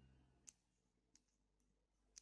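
Near silence with two faint, sharp computer mouse clicks about two-thirds of a second apart, just after the last of the music dies away.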